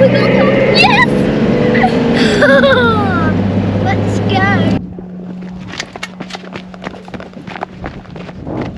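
Four-wheel-drive ute running along a dirt track, a steady engine and cabin drone with a voice calling out in rising and falling glides over it. About five seconds in the drone cuts off abruptly, leaving a much quieter run of short sharp ticks.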